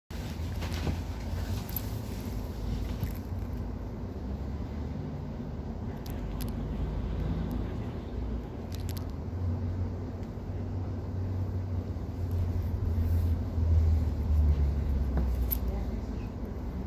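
Low steady hum heard from inside a tram car, with a few faint clicks. The hum swells about three quarters of the way through.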